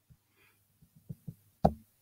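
Several short knocks and clicks, with the loudest about one and a half seconds in.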